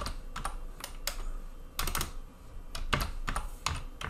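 Typing on a computer keyboard: a run of uneven key clicks, several a second.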